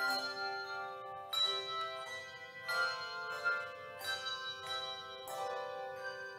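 A handbell choir ringing chords, a new chord struck about every second and a half and each left to ring into the next.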